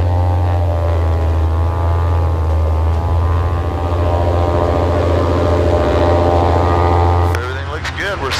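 Zivko Edge 540 aerobatic plane's six-cylinder Lycoming piston engine and propeller held at a steady run-up for a magneto check before takeoff. Its pitch dips slightly a second or two in. The engine drops back and quietens about seven seconds in.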